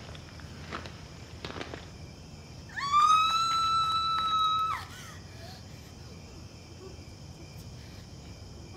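A woman's high-pitched scream held for about two seconds, starting about three seconds in, rising at the onset and dropping away at the end. Before it there are a few faint knocks, such as footsteps, over a low steady background.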